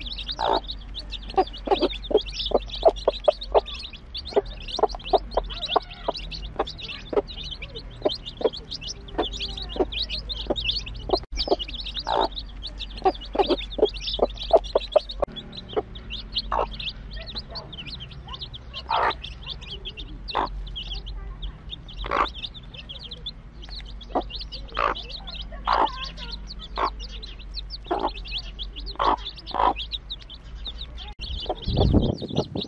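A brood of young chicks peeping constantly in high chirps, with a mother hen's short, frequent clucks among them as they feed on grain.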